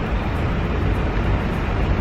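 A long breath blown out, heard as a steady rush of air on the microphone, over a low rumble of street traffic.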